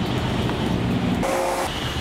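A motor vehicle running nearby, a steady rumbling road noise, with a brief steady tone about a second and a quarter in.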